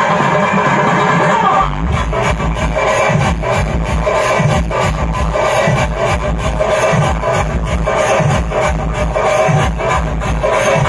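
Loud dance music played through a DJ van's stacked loudspeakers. Heavy bass and a steady beat come in about two seconds in.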